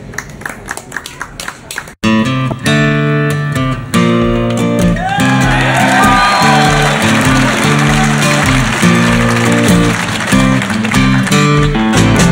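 Selmer-Maccaferri-style acoustic guitar played note by note. About two seconds in, a sudden cut to a much louder music track: sustained guitar chords over bass, with a lead line of bending notes.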